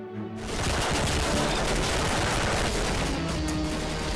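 Rapid automatic gunfire from the Roblox shooter Arsenal played on a tablet, starting a moment in and going on without a break, over background music.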